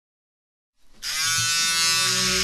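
Dead silence, then a loud, steady buzzing drone cuts in suddenly about a second in: the strange, scary noise in the skit's plot.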